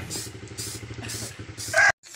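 Aerosol spray-paint can hissing in several short bursts over the steady, pulsing hum of a small engine idling; a brief voice near the end, then the sound cuts off suddenly.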